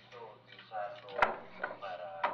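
A single sharp knock or tap about a second in, over faint voices.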